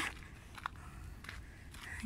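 Footsteps on a dry dirt-and-gravel hiking trail: a few faint crunching steps over low background noise.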